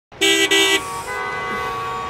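Vehicle horns in a traffic jam: two short, loud honks in quick succession, then a quieter horn held steadily.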